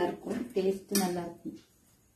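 Speech: a voice talking for about a second and a half, then quiet.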